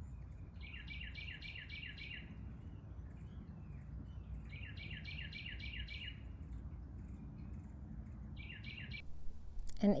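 A songbird singing outdoors: two runs of quick, evenly repeated chirps, about five a second, with a shorter run near the end, over a steady low background rumble.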